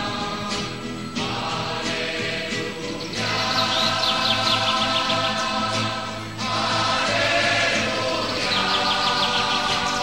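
Choir singing sustained chords in a slow sacred piece. A songbird's quick run of chirps sounds faintly above it twice, a few seconds in and near the end.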